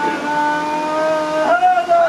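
A man's voice holding one long drawn-out note of a chanted devotional dua, amplified through a microphone; the pitch lifts a step about one and a half seconds in and is held again.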